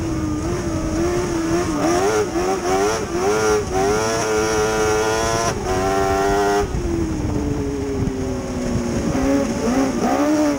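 Mod Lite dirt-track race car's engine heard from inside the cockpit at racing speed, its pitch rising and falling with the throttle. It holds high on the straight, then is lifted about six and a half seconds in, sinking in pitch through the turn before the driver gets back on the gas near the end.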